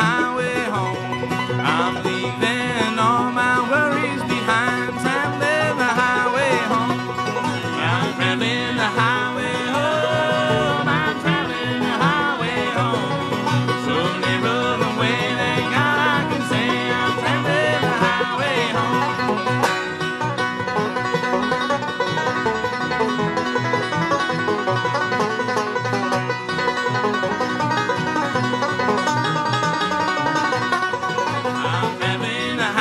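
Bluegrass band playing an instrumental break on fiddle, mandolin, banjo, acoustic guitar and upright bass. A fiddle leads with sliding notes for roughly the first two-thirds, then banjo picking takes over the lead.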